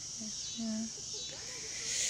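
Steady high-pitched chorus of insects, with faint distant voices talking briefly early on and a soft rush of noise rising near the end.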